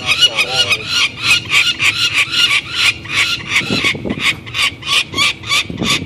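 Peregrine falcon calling in a long, rapid run of harsh cries, about five a second.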